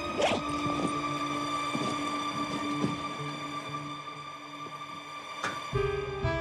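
Background drama score holding long, steady sustained notes, with a few short knocks and rustles of belongings being searched through.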